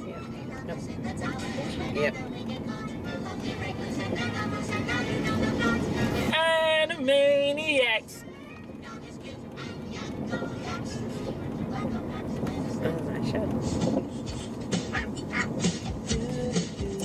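A 1990s cartoon TV theme song playing, with a voice holding a wavering, vibrato note from about six to eight seconds in, after which the music drops quieter.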